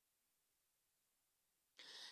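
Near silence: the room's sound in a pause between speakers, with a brief faint noise near the end just before the next speaker begins.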